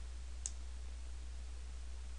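A single faint computer-mouse click about half a second in, over a steady low hum and faint hiss.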